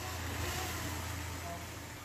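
Outdoor background noise: a steady low rumble with a hiss over it, fading out in the second half.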